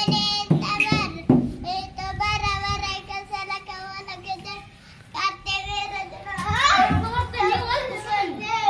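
A young boy singing in long, drawn-out wavering notes, with a few short thumps in the first second or so and more sung child voice after a short pause near the middle.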